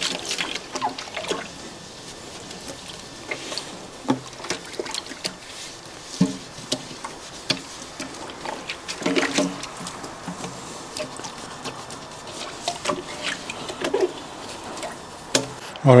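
A sponge scrubbing the inside of a glass aquarium in shallow soapy water: wiping and sloshing with scattered clicks and knocks against the glass.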